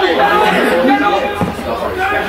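Overlapping voices of several people talking and calling out at once across a football pitch, with a short dull thud about one and a half seconds in.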